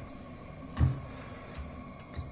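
Crickets chirping steadily in an even rhythm, with one heavy low thump a little under a second in and a fainter thump a bit later.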